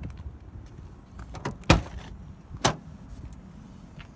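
Rear liftgate of a 2000 Toyota 4Runner being unlatched and raised, heard as three sharp clunks: a small one about one and a half seconds in, the loudest just after it, and another about a second later.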